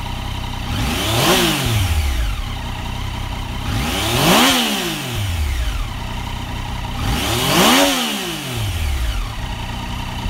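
2016 Yamaha FJ-09's 847 cc inline-three engine idling in neutral and revved three times, each blip a quick rise and fall in pitch, about three seconds apart.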